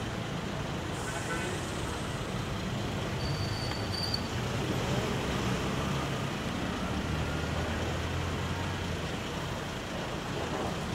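Street traffic noise with a vehicle engine running nearby, a steady low hum that grows a little stronger in the second half.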